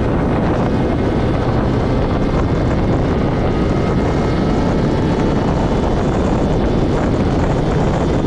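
Piaggio Zip scooter's two-stroke engine, fitted with a 70 cc DR cylinder kit and an Arrow Focus exhaust, running at a steady cruising speed with no revving up or down. Wind noise on the microphone mixes in with the engine.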